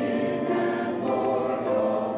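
Mixed-voice church choir singing, holding long notes that move from chord to chord.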